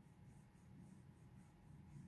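Faint scratching rustle of fingers rubbing through a dog's thick fur, in quick repeated strokes, several a second, over a low background hum.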